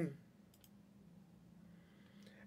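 Quiet room tone with two faint, quick clicks about half a second in.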